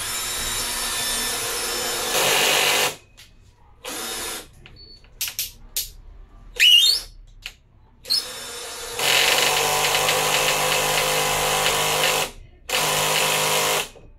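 Handheld power drill running in repeated runs against wall board, its pitch stepping up a few seconds in, the longest run about three seconds. Small clicks and a brief rising squeak come in a gap midway.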